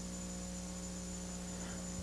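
Steady electrical mains hum with a stack of overtones and faint hiss underneath.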